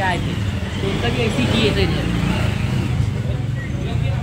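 Indistinct voices of people talking, too unclear to make out words, over a steady low rumble of background noise.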